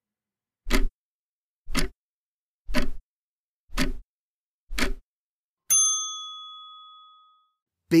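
Quiz answer-timer sound effect: five short clock-like ticks about one per second, then a single bell ding about six seconds in that rings out for nearly two seconds, marking that the time to answer is up.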